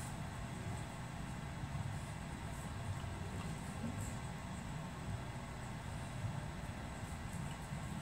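Steady low background rumble with a faint, constant high-pitched whine, and a few faint ticks.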